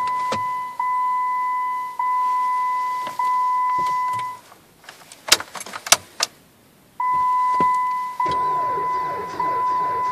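Jeep Patriot's dashboard warning chime: a steady tone that pulses about once a second and cuts off about four seconds in as the ignition is switched off. A few sharp clicks and a jingle of keys follow, then the chime starts again about seven seconds in with the key back on.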